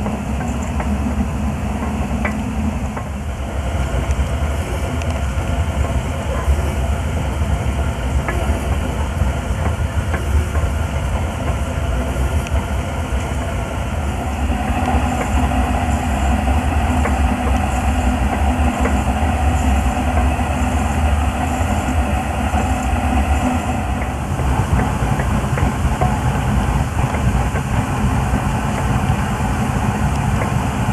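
1874-patent Lidgerwood two-cylinder single-drum steam hoist running under steam, its engine and gearing turning over continuously while steam hisses from around the cylinders.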